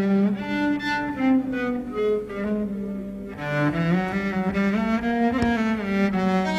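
Solo cello played with the bow: a slow melody of held notes, one after another.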